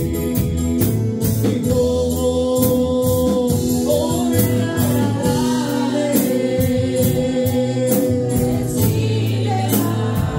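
Congregation singing a gospel worship song together, over live band accompaniment with held bass notes and a steady beat.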